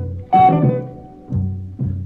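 Instrumental introduction of a western song: low string instruments play a few separate notes, each struck and then dying away, about a second apart, just before the singing begins.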